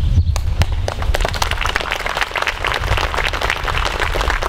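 Crowd applause: many hands clapping in a dense, irregular patter that starts a fraction of a second in.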